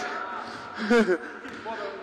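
Voices: quiet talk with one short, louder vocal burst about a second in. No ball bouncing is heard.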